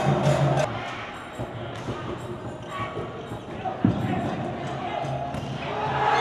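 A cheering section's drums and chanting break off within the first second, leaving the quieter sound of a volleyball rally in a large hall. There is one sharp smack of the ball about four seconds in.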